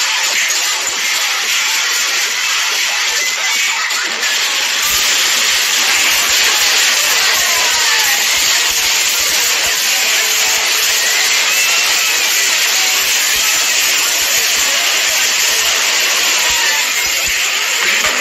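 A loud, continuous cartoon brawl sound effect: a dense jumble of scuffling and hits mixed with music, growing fuller about five seconds in.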